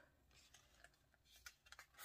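Near silence, with a few faint small clicks and rustles of paper being handled in the second half.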